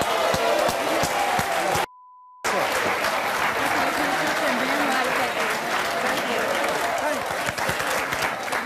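Studio audience applauding and cheering, with voices shouting over the clapping. About two seconds in, the sound cuts out for half a second under a flat censor bleep.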